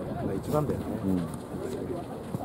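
Voices of players and onlookers calling out on the pitch, short shouts too far off to be caught as words, over the open-air background noise.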